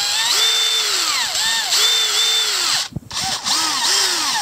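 Cordless drill with a metal twist bit drilling out the plastic plug over a screw in a battery pack's plastic case, its motor whine rising and falling in pitch as speed changes under the trigger and load. It stops briefly about three seconds in, then starts again.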